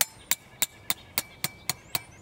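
A hooked steel tent stake being hammered into the ground with quick, steady blows, about four strikes a second, each hit with a short metallic ring.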